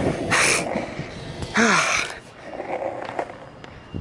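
A man breathing hard: two loud puffs of breath about a second apart, the second with a little voice in it, as after the effort of pushing a skateboard.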